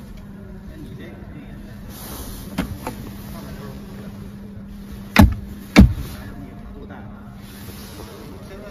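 Centre-console armrest storage lid being worked: a couple of light latch clicks, then two loud knocks about half a second apart as the lid is shut, over a steady low hum.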